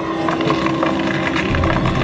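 Fantasy film soundtrack playing over cinema speakers: the sound effect of a blue magic beam shot from a character's hand, with a steady low drone running through most of it.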